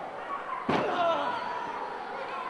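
A single sharp impact on a wrestling ring, about two-thirds of a second in, amid shouting voices.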